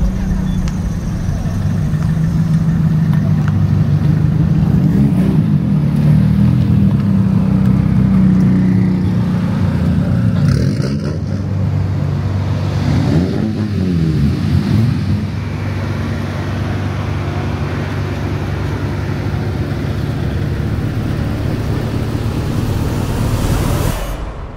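Car engines running, with a couple of revs whose pitch rises and falls, and voices in the background.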